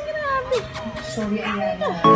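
Young puppies whining and squeaking: several short, high calls that slide up and down in pitch.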